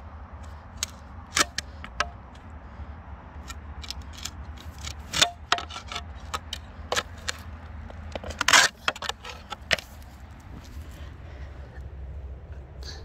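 Spade digging in wet clay soil around a buried rusty iron piece: the blade scrapes and knocks irregularly, with the loudest scrape about eight and a half seconds in.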